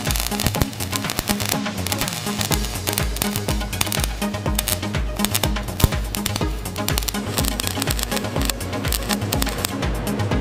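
Electronic background music with a steady bass beat about twice a second, laid over a dense crackling like the spatter of an electric welding arc.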